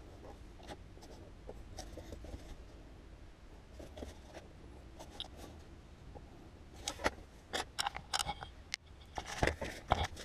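Pencil scratching along a steel ruler on a pad of graph paper as straight lines are drawn. From about seven seconds in come louder sharp rustles and taps as the paper and ruler are handled.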